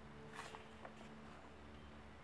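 Near silence with a faint steady hum, broken by a few soft brushes of paper as hands handle a sketchbook page, about half a second and a second in.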